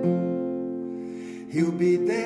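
Acoustic guitar music: held notes ring and slowly fade, then a new chord is struck about one and a half seconds in.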